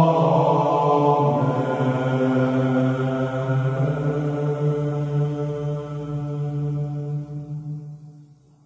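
A long, held chanted note, like a sung "ah", on one steady pitch with a slight shift about a second and a half in. It slowly fades and dies away near the end.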